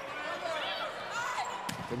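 Volleyball rally: players' hands striking the ball, with two sharp hits near the end, over faint voices and crowd noise.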